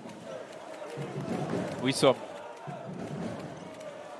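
Arena ambience during a live professional basketball game: steady crowd noise with a basketball being dribbled on the hardwood court.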